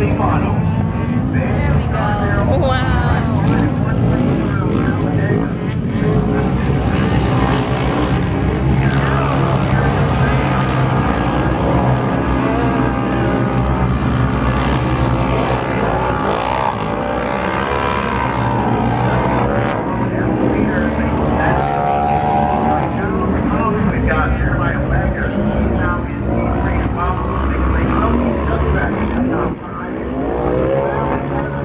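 Several racing side-by-side UTV engines running hard together, their pitches rising and falling over each other as they accelerate and lift through the dirt track's jumps and turns.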